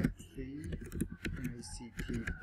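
Typing on a computer keyboard: a run of separate, irregularly spaced keystroke clicks.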